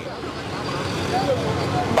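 Street traffic: a motor vehicle running nearby, its low rumble growing louder, with faint voices in the background.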